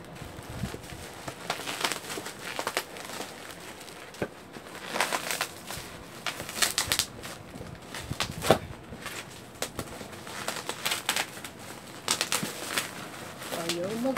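Parcel packaging crinkling and tearing in irregular bursts as it is opened by hand, with a sharp snap about eight seconds in.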